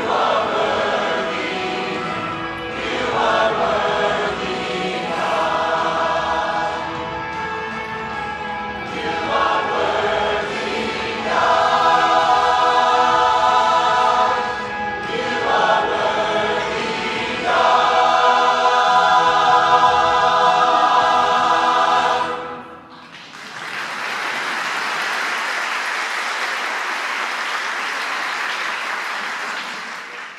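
Large mixed choir singing in full harmony, building to a loud held final chord that cuts off about 22 seconds in. The audience then applauds, fading away near the end.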